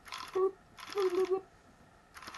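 Motor-driven pusher of a 3D-printed fully automatic Nerf blaster, the Lepus, cycling with its shell opened: a fast rattling whirr over a steady hum. Two short bursts, the second a little longer.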